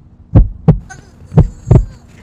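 Heartbeat sound effect: deep lub-dub double thumps, about one beat a second, two beats in all, over a faint steady hum.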